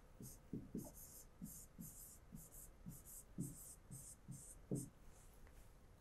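Faint scratches and taps of a stylus writing a word on an interactive whiteboard screen, a quick run of short separate pen strokes.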